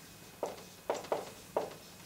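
Dry-erase marker writing on a whiteboard: about four short, separate strokes as a word is written.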